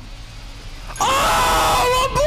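A man's loud, sustained scream of excitement, starting about a second in.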